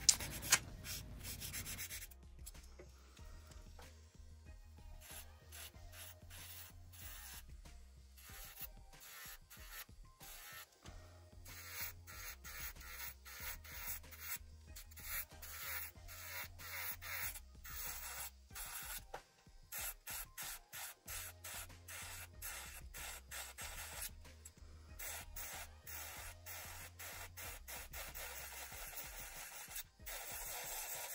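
Acrylic nail extensions being filed: quick, repeated rasping strokes of a hand nail file, and later an electric nail drill's bit grinding the acrylic. Quiet background music with a repeating bass line plays underneath.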